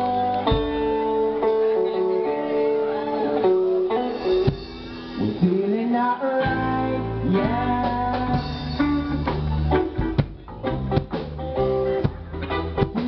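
Live reggae band playing, led by guitar over a bass line, with a voice singing over the music. The bass drops out for about two seconds midway, then comes back in.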